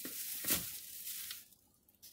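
Rustling and handling noise as shopping items are put down and picked up, with a sharper knock about half a second in, stopping about a second and a half in.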